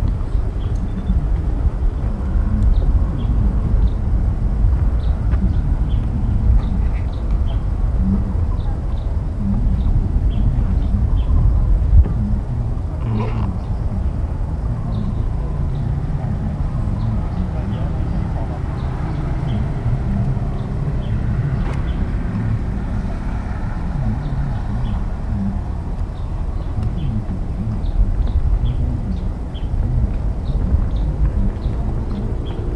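Outdoor park ambience dominated by a steady low rumble on the microphone, with faint voices of people in the distance and scattered small high chirps.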